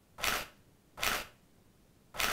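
Camera shutter firing twice, about three-quarters of a second apart, each a short burst.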